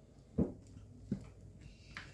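Rubber spatula stirring thick cream-cheese filling in a glass bowl, quiet apart from two soft knocks, about half a second and a second in.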